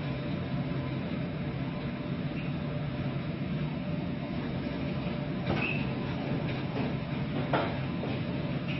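A steady low rumble of the LPG tanker's engine and machinery, heard from the bridge, mixed with a hiss of wind and sea as the ship runs through rough water. Two short knocks come in the second half.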